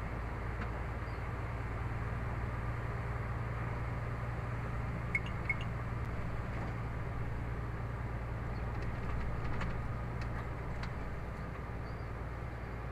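Steady engine drone and road noise heard from inside a moving vehicle's cabin, with two short high clicks close together about five seconds in.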